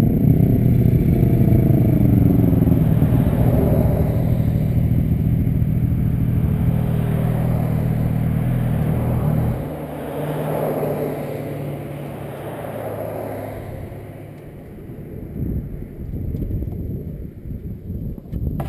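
Motorcycle engine idling steadily while stopped, with the idle note changing and dropping in level about ten seconds in. Passing traffic on the road, including a pickup truck going by just after the change.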